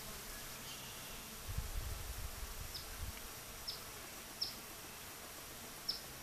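Swarm of honey bees buzzing around a hummingbird feeder. A few short, high, falling chirps stand out over the buzz in the second half, and a low rumble comes and goes in the first half.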